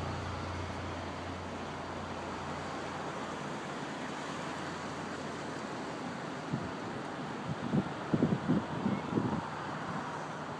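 Steady wind noise on the microphone. Faint distant voice sounds come and go in the last few seconds.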